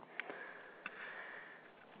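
Faint breath drawn in through the nose during a pause in speech, with a couple of small mouth clicks.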